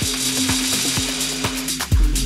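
Electro dance music from a DJ mix with a steady beat. The deep kick and bass thin out while a hiss-like noise wash fills the top, then the heavy kick and bass come back in at the very end.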